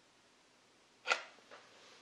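Near silence, broken about a second in by one short, sharp breath sound from the reader, a quick intake of air before he speaks again.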